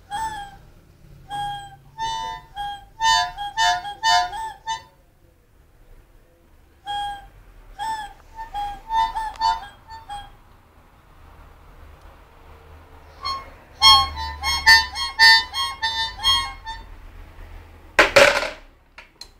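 A young child blowing short notes on a harmonica in three bursts with quiet pauses between them.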